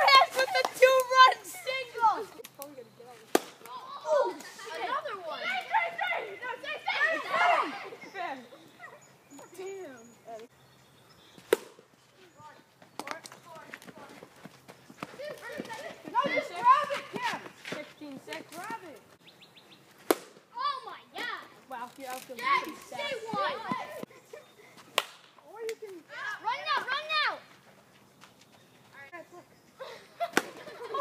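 Boys' voices shouting and calling out during a backyard wiffle ball game, coming and going in bursts, with a few sharp knocks in between.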